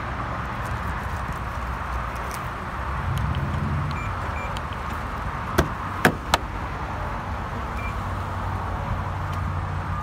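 Three sharp clicks a little past halfway as the 2007 BMW X5's locks are released and its driver's door latch is opened with the key. A steady low rumble runs underneath.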